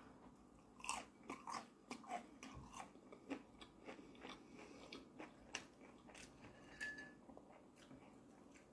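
Crunching and chewing of crispy battered fried fish close to the microphone: a burst of loud crunches about a second in as the bite is taken, then sparser crunches as it is chewed.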